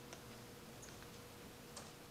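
Near silence: quiet room tone with a faint steady hum and a few faint clicks, the clearest near the end.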